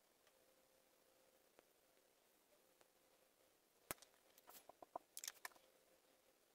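Near-silent room tone, then a sharp click about four seconds in and a quick run of light ticks and taps: a paintbrush tapping against a ceramic tile palette.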